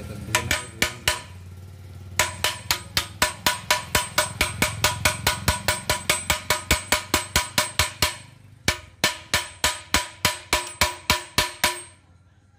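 Steel motorcycle exhaust pipe (Hero Splendor silencer) banged repeatedly, end-down, against a concrete floor. The clanks ring sharply and come at about four a second in two long runs with a short pause between. This is the knocking that shakes loose carbon soot from inside the silencer.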